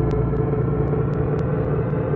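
Sound design for an intro sequence: a low, steady rumbling drone with a faint hum and a few scattered faint clicks.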